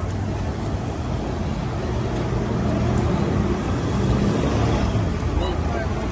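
City street traffic rumbling steadily, swelling louder through the middle as a vehicle passes.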